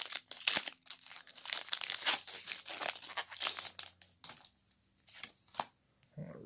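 Foil booster pack wrapper being torn open and crinkled by hand, a dense crackle for about four seconds, then a few light ticks of handling as the cards come out.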